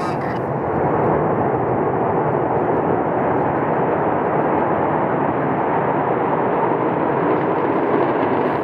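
Angara-1.2PP rocket's RD-191 first-stage engine at liftoff: a steady, dense rushing noise that rises slightly about a second in and then holds level as the rocket climbs off the pad.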